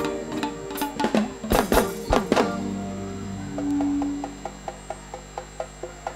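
Live band's music coming to an end: a few loud drum strikes in the first two and a half seconds, then held notes fading out, and a light ticking about four times a second over the last two seconds.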